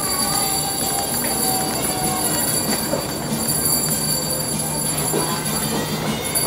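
Shopping trolley being pushed along a mall floor, its wheels rolling steadily, with the even background noise of a busy mall.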